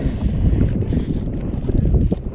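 Wind buffeting the camera microphone on open water, a loud, uneven low rumble.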